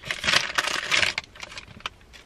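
Small clear plastic bag of fuses crinkling and crackling as it is handled and opened, busiest for about the first second, then fading, with a single sharp click near the end.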